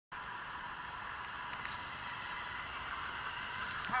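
Steady hiss of street traffic noise, even and without distinct events, with a man's voice starting at the very end.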